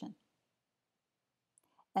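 Near silence: the sound drops out completely between spoken phrases, with the end of a word at the very start and a couple of faint clicks shortly before the voice returns near the end.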